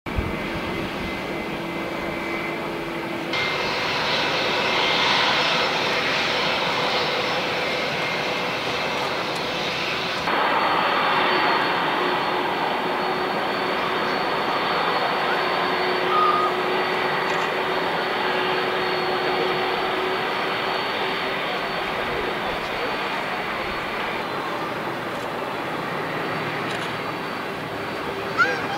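Boeing 747-400's four turbofan engines running at taxi power, heard from a distance: a steady jet rumble with a thin high whine on top. The sound changes abruptly twice in the first ten seconds.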